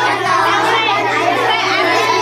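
Many children's voices at once, a dense overlapping babble of talk with no pauses, over a steady low hum.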